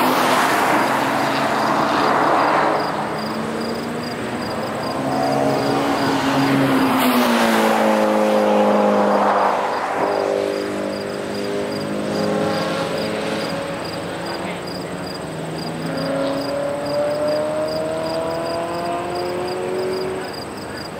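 Track-day cars lapping a road circuit, their engines revving and easing through the gears. One engine note falls away around the middle, and another climbs steadily near the end as a car accelerates.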